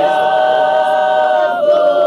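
Several voices singing together unaccompanied, holding one long note that moves to the next about one and a half seconds in.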